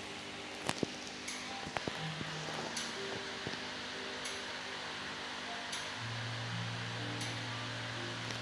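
Kennel room ambience: a steady ventilation hiss with faint music playing in the background. There are a few sharp clicks in the first couple of seconds, and a short high chirp repeats about every one and a half seconds.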